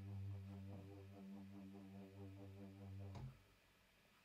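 A Retrologue 2 software synthesizer bass preset sounding one held low note, which cuts off abruptly with a click about three seconds in.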